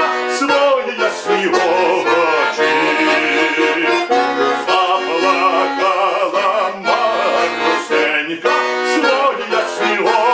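Chromatic button accordion playing a Ukrainian folk song, with a man singing along in a strong voice.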